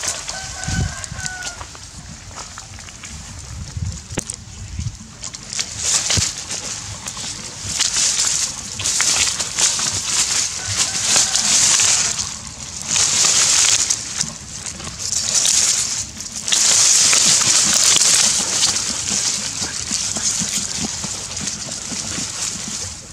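A dog digging and nosing into a hole in dry grass and soil: bursts of scraping earth and rustling dry stalks, each about a second long, coming more often in the second half and longest near the end. A short high call sounds about a second in.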